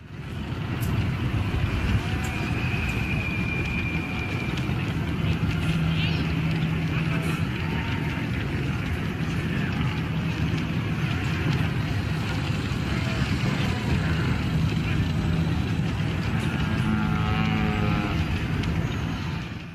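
Sci-fi street ambience: a steady bed of vehicle rumble and low hum with murmuring voice-like chatter, and a few electronic whistles and beeps over it, one held high tone early on and a stepped beeping near the end.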